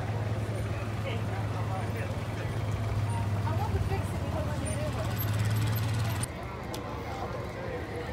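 A motor vehicle's engine running with a steady low hum under background crowd chatter. The hum cuts off suddenly about six seconds in.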